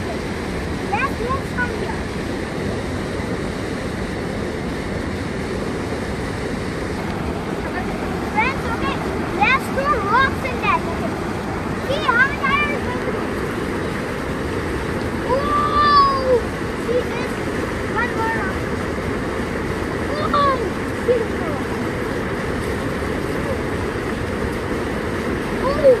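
Rapids of a mountain river rushing steadily. Brief voice sounds come and go over the water, mostly in the middle.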